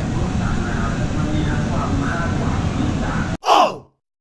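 Steady shop-interior background noise with faint voices under it. About three and a half seconds in, it cuts off abruptly and a short edit sound effect plays, falling in pitch.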